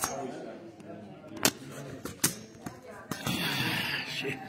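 Handling knocks and clicks as a phone camera is moved and fitted into a mount: two sharp knocks, about a second and a half and two and a quarter seconds in, among smaller clicks, with voices in the room.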